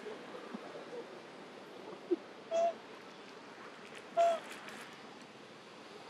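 Macaque giving two short, clear calls about a second and a half apart, over a steady outdoor background hiss.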